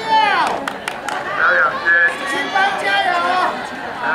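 Several people's voices chattering and calling out over one another, with one drawn-out call falling in pitch at the very start.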